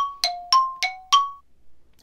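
A short chime jingle: about five bright struck notes, roughly three a second, alternating between two pitches, each ringing briefly, the last one fading about one and a half seconds in.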